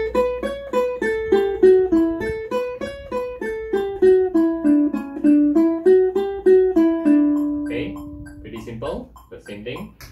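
Ukulele playing a single-note eighth-note scale run from A Mixolydian into D major, plucked alternately with index and middle fingers at 100 bpm. A metronome ticks along. The run ends on a held low note about seven seconds in.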